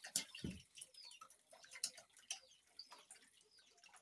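Faint, irregular splashing and dripping of shallow water in a drained-down tank crowded with catfish.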